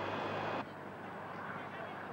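The twin-engine, four-turbo DAF rally truck running hard, a loud rushing engine noise that cuts off abruptly about half a second in, leaving a quieter engine sound.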